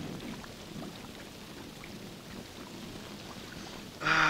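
Steady rain: an even, soft hiss with scattered faint drop ticks.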